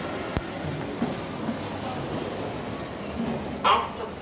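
Steady background hubbub of a busy shopping-centre concourse, with a sharp click about half a second in and a brief loud pitched sound near the end.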